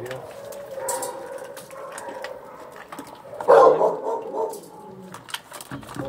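A dog eating from a stainless steel bowl: chewing, with many sharp clicks of mouth and food against the metal. About three and a half seconds in there is a louder, voice-like sound, the loudest moment.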